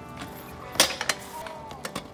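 Stunt scooter's deck and wheels clacking on concrete: one sharp clack just under a second in, then a few lighter clicks, with faint music underneath.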